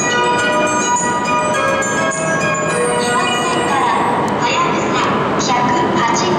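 A melody of bell-like chime notes played over a railway platform's loudspeakers, each note held for about half a second, fading out about halfway through.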